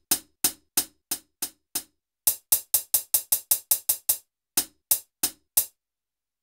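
A single drum sample played from an Akai MPC pad, the same hit again and again. It starts at about three hits a second, then after a short pause comes a fast roll of about a dozen hits, then four more spaced hits near the end.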